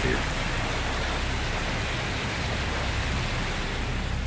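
Steamboat Geyser erupting: a steady, even rushing hiss of steam and spraying water that does not change over the few seconds.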